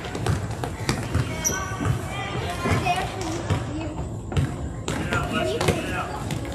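Basketball bouncing on a gym floor as it is dribbled up court, with indistinct shouts and voices of players and spectators echoing in the gym.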